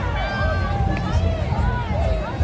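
Crowd chatter: many overlapping voices of people walking past close by, over a steady low rumble on the microphone.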